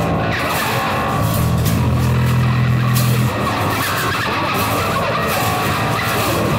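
Rock band music: electric guitars over drums and cymbals, with a strong held low note from about one and a half seconds in that stops a little after three seconds.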